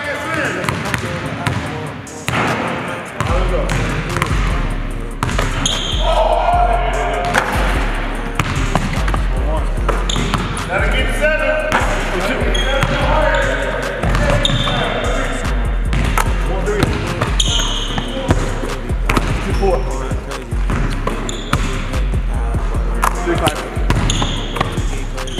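Basketballs bouncing on a hardwood gym floor during shooting drills, a string of sharp knocks, under a music track whose deep, steady bass line comes in about three seconds in.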